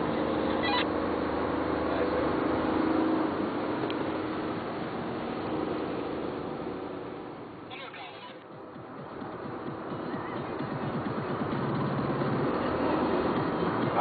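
Car cabin noise while driving at road speed: a steady engine hum with tyre and wind noise. The sound dips away briefly about eight seconds in, then returns.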